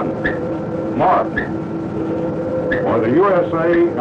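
A man's voice speaking over a submarine's announcing system, under a steady hum of held tones. The speech comes mainly in the second half, with a few brief rising sounds about once a second before it.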